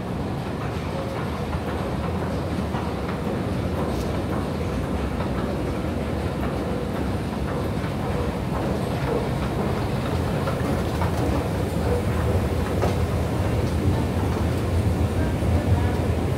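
Subway escalator running: a steady low mechanical rumble with rattling from the moving steps, growing louder and fuller in the second half as the escalator is boarded.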